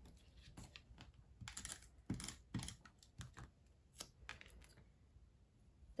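Faint scattered taps and light clicks of paper being handled as fingers pick up a small die-cut paper circle and press it down onto a card.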